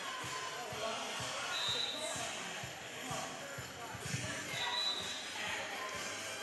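Roller skates rolling and knocking on a hard hall floor, with crowd voices echoing in a large hall and two short referee whistle blasts, about a second and a half in and again near the end.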